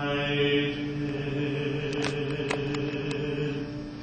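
Theatre orchestra holding a long, steady low chord that fades near the end, with a few faint clicks in the middle.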